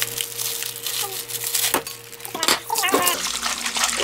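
Water running and splashing in a stainless-steel kitchen sink, with a plastic bag rustling and a few sharp clicks as scissors cut open a pack of salted seaweed stems.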